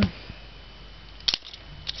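A single sharp plastic click about a second in, from the Lego Technic arm being handled, with a fainter tick just after and another near the end, over quiet room noise.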